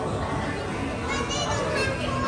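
A young child's high-pitched voice, a brief wordless call or squeal, a little over a second in, over steady shop background noise.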